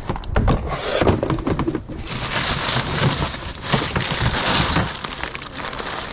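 Rustling and crinkling as a hand pushes through artificial pine garland and a plastic bag in a plastic storage tote, with scattered clicks and knocks in the first half and a denser run of rustling in the middle.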